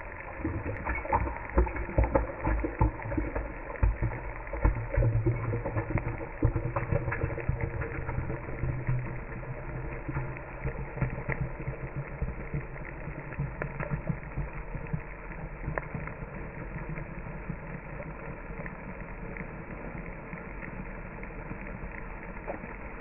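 Handling noise from a device held against something close to its microphone: rubbing and irregular bumps, heaviest in the first half, then a steadier low rumble.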